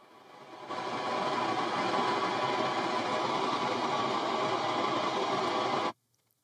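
Room EQ Wizard's speaker calibration signal, pink test noise played through a loudspeaker, fading up over about the first second and then holding steady. It cuts off suddenly near the end, when the calibration stops on a too-low input level.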